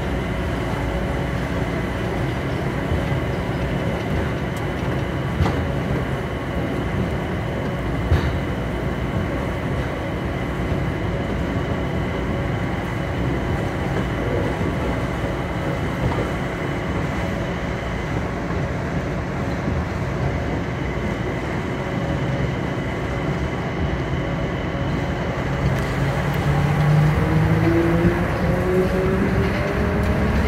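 Ride inside a MIA Mover automated people-mover car, a rubber-tyred train running along its guideway. It gives a steady running rumble with faint steady tones and two short sharp knocks in the first ten seconds. Near the end a motor whine rises in pitch and grows louder.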